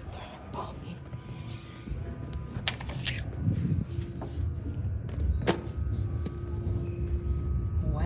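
Handling rumble and knocks as a Bop It toy is picked up off a hard floor, with several sharp clicks, the loudest about five and a half seconds in. A faint steady hum runs through the second half.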